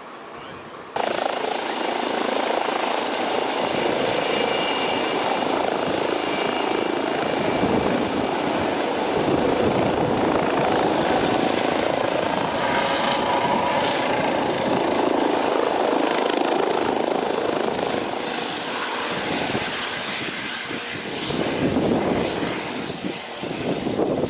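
Yellow trauma helicopter, a Eurocopter EC135 with a shrouded tail rotor, running close by with a loud, steady rotor and turbine noise that starts abruptly about a second in. It eases off briefly near the end, then swells again as the helicopter climbs away.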